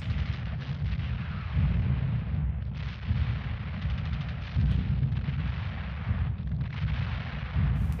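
Battle soundtrack to war footage: rapid gunfire and artillery blasts over a continuous deep rumble, rising in several louder surges.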